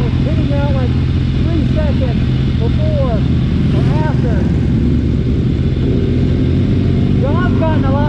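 Motorcycle engine idling with a steady low hum, with muffled, unintelligible voices talking on and off over it.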